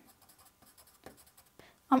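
Faint scratching of a charcoal pencil on Bristol vellum paper, with a few light ticks as dots and short strokes are shaded in.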